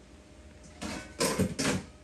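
Handling of a stoneware fermenting crock: three short scraping, knocking sounds just past the middle, the last two the loudest, as the crock's pieces are moved about.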